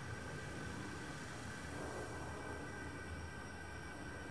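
Faint, steady sizzling hiss from a hot 1075 carbon-steel blade held edge-down in quench oil during an edge quench.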